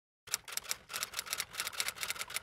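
A typewriter-style typing sound effect: rapid key clacks, about six or seven a second, starting about a quarter second in. They go with on-screen text being typed out letter by letter.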